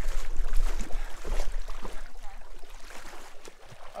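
Shallow river water sloshing and splashing around the legs of someone wading, with a low rumble on the microphone during the first second and a half.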